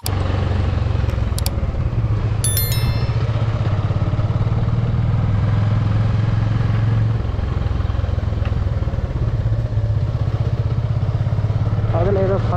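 Motorcycle engine running steadily while being ridden, heard from the rider's seat, easing off slightly past the middle. About two and a half seconds in, a brief high-pitched ringing chirp.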